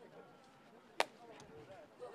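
A single sharp crack about a second in: a wooden shinty caman striking the ball as a player tosses it up and hits it out.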